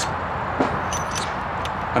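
Steady outdoor background noise, with a few faint clicks from the plastic bit release of a cordless collated drywall screwdriver being pulled back.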